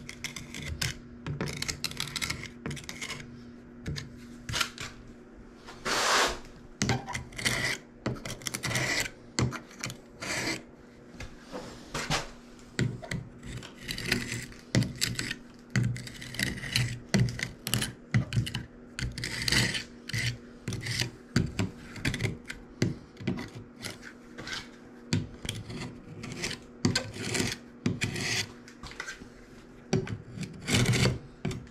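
Utility knife blade scraping along the joints between glass wall tiles, cleaning out the joints in many short, irregular strokes.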